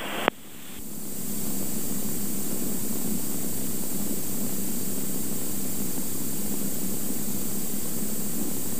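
Steady cockpit noise of a Cirrus SR22's six-cylinder piston engine, propeller and airflow, heard inside the cabin at reduced power on approach. The radio audio cuts off sharply just after the start, and the engine and wind noise fades up over about a second, then holds even, with a faint high steady tone above it.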